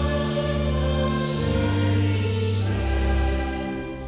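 Congregation singing a Reformed hymn in slow, long-held notes that move to a new chord every second or so, with a short dip between lines near the end.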